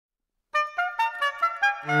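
Oboe and cello duet: after a short silence, the oboe plays a quick run of short detached notes, about five a second, moving up and down, and the cello comes in underneath with a low held note near the end.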